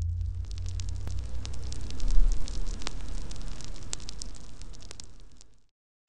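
Fire sound effect: crackling over a deep rumble, fading away and cutting off just before the end.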